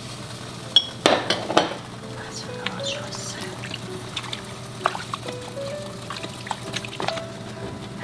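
Soft background music carrying a simple stepping melody, over a utensil stirring and clinking in a stainless steel pot of saucy braised chicken stew. The stirring is loudest about a second in, with a few light clinks after.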